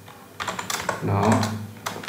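Typing on a computer keyboard: a few quick keystrokes about half a second in, then more near the end.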